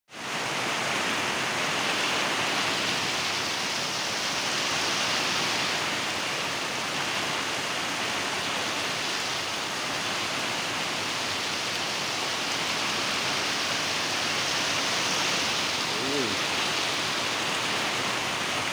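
Heavy rain pouring steadily on a corrugated roof and trees, with water streaming off the roof's eaves.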